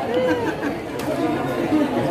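People talking, with overlapping voices of chatter.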